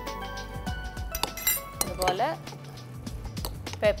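A metal spoon clinking against a white ceramic bowl as a filling is stirred and seasoned, over steady background music.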